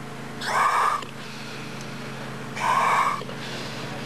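Two hissing breaths drawn through a scuba regulator's demand valve, about two seconds apart, each lasting just over half a second.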